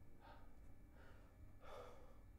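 A man breathing heavily and faintly, three gasping breaths about two-thirds of a second apart.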